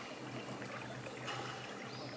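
Open-air sound from a small boat on a lake: a steady wash of water noise over a low, constant hum, with a couple of faint high chirps.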